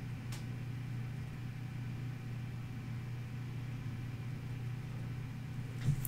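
Quiet room tone: a steady low electrical hum with a faint hiss, and one faint click just after the start.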